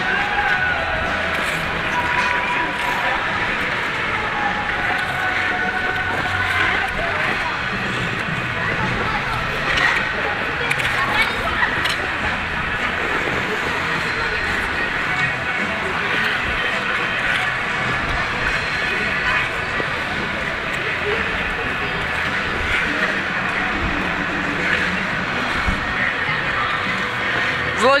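Busy indoor ice rink ambience: music playing in the hall under a steady chatter of skaters' voices.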